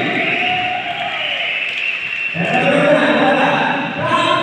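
Many voices echoing in a large indoor hall: group singing trails off around the middle, then talking voices take over.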